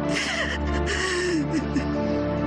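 A woman sobbing, with two breathy sobs in the first second and a half, over background music of steady held chords.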